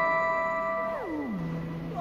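Electric guitar holding a high sustained note that slides smoothly down to a low note about a second in, then rings on and fades.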